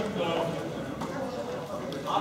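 Indistinct voices talking in a gym hall, with light footfalls of wrestling shoes shuffling on the mat.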